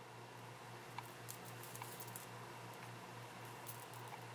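Faint handling sounds of seed beadwork: a few light clicks and scratchy rustles as fingers draw a needle and beading thread through small glass seed beads and turn the beaded strip. A steady low hum sits underneath.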